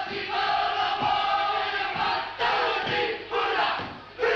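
Māori kapa haka group chanting in unison: one long held chanted line, then two short shouted phrases in the second half.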